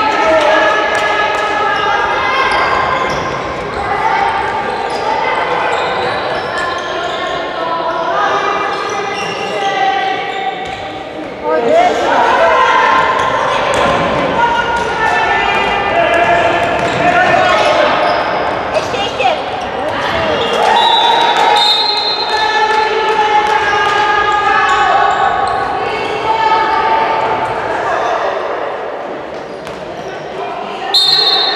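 A handball bouncing on a sports-hall floor amid continual shouting and calling voices, all echoing in a large gym, with a louder burst of shouting about twelve seconds in.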